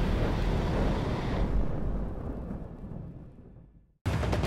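Deep, noisy rumble of a cinematic trailer sound effect, a boom-like swell with heavy low end, fading away over the last two seconds to silence.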